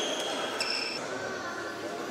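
A short, high squeak of sports shoes on the court about half a second in, over a steady murmur of spectator voices in the echoing hall.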